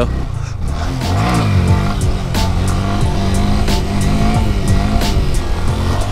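Honda Grom's 125 cc single-cylinder engine revving for a wheelie, its pitch rising and falling about a second in, then running on steadily.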